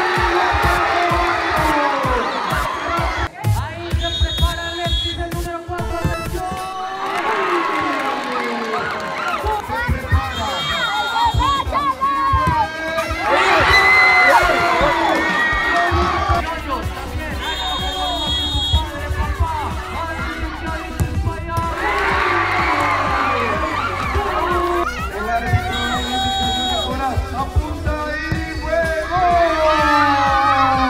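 Crowd of football spectators shouting and cheering during a penalty shootout, many voices rising and falling, with music playing underneath.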